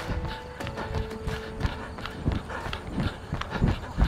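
Running footsteps on pavement, a steady beat of about three footfalls a second, over background music.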